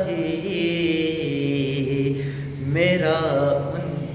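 A man's solo voice singing a naat, unaccompanied, drawing out long held notes with ornamented wavers. About three seconds in the voice climbs through a quick rising and falling run.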